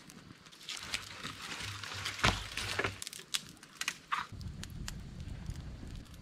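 Handling noises from a camp meal being served: scattered light clicks and knocks with some rustling, and a sharper knock about two seconds in.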